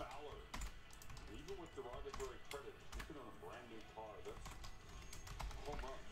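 Typing on a computer keyboard: scattered key clicks, with a faint voice underneath.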